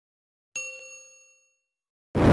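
A single bell ding sound effect from a subscribe-button animation, the notification-bell chime, struck once about half a second in and fading away over about a second.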